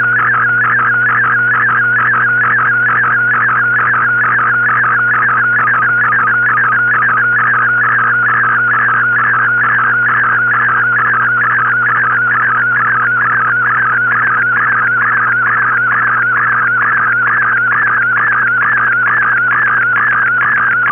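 MFSK-64 picture transmission received on a shortwave AM receiver: a continuous tone centred near 1.5 kHz that wavers rapidly in pitch as the image lines are sent, over radio hiss and a steady low hum.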